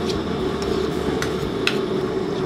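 A steel ladle knocking lightly in a wok as a lump of lard melts in it: a few sparse clicks over a steady background hum.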